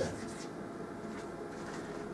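Chalk writing on a blackboard: faint scratching of the chalk as a line of an equation is written.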